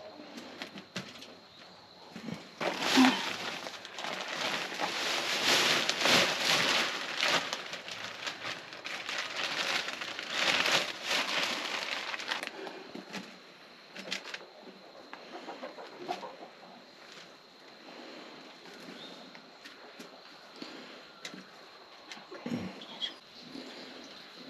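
Potting soil poured out of a bag into a metal-lined raised bed: a rushing, rustling pour lasting about ten seconds, then quieter scattered rustles and pats as the soil is spread by hand. A faint steady high whine runs underneath.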